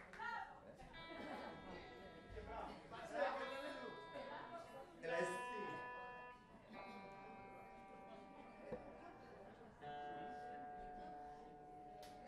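Guitar played softly between songs: a few notes and chords struck several seconds apart, each left to ring for a second or two, over low chatter.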